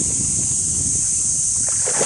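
A hooked black bass thrashing and splashing at the surface beside the boat during the fight, over a steady high drone of insects.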